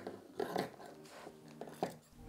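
Scissors snipping through quilt batting and cotton backing fabric: a few faint, soft cuts, one about half a second in and a sharper one near the end.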